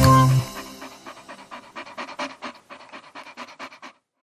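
The song's final chord dies away, then a cartoon puppy pants in quick, short, evenly spaced breaths for about three seconds.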